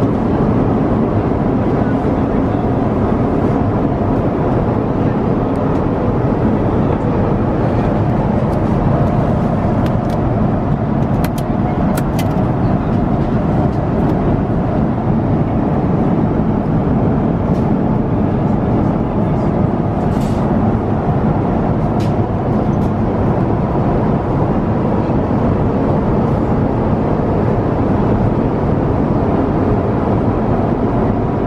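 Steady cabin noise of an Airbus A350-900 airliner in flight: an even, loud low roar of airflow and engines. A few faint clicks sound around the middle.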